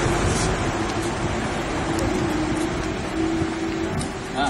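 Steady outdoor background noise, an even hiss with a faint low hum running under it and a few faint clicks.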